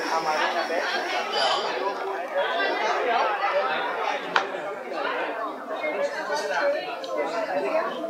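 Several people talking at once close by, overlapping chatter with no single clear voice. A single sharp click about four and a half seconds in.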